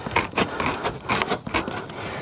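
Hand tin snips cutting sheet-metal roof valley flashing: a quick run of short snips, about four a second.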